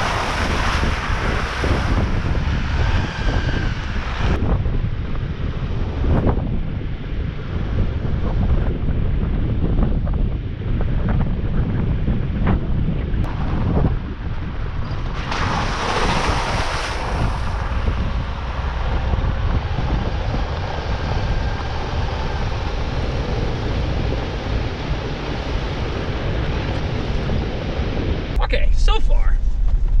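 A Jeep Wrangler's front tyre splashing through a shallow creek crossing, with a loud rush of water at the start and again about sixteen seconds in, over steady wind rumbling on an outside-mounted microphone and the noise of the tyres on the dirt track.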